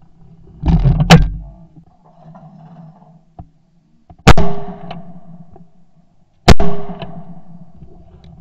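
Two shotgun shots a little over two seconds apart, each trailing off briefly: both barrels of a Yildiz Elegant A3 TE 12-bore side-by-side fired at a true pair of clays. About a second in comes a shorter loud clunk with a sharp crack.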